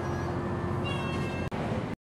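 Steady engine and road noise heard from inside a moving bus, with a few short high-pitched squeals about a second in.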